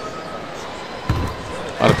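Steady arena crowd murmur during a free throw, with one low thud of the basketball bouncing on the hardwood court about a second in.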